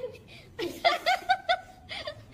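A short burst of laughter: about six quick, high-pitched "ha" pulses about half a second in, lasting about a second.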